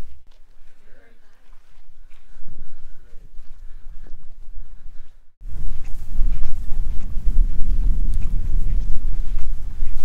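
Quiet open-air ambience with faint voices. About five seconds in this gives way to loud, gusty wind buffeting the microphone, a constant low rumble that covers everything else.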